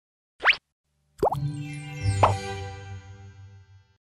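Short intro jingle: a quick rising pop, then two more rising pops over a held musical chord that rings on and fades out.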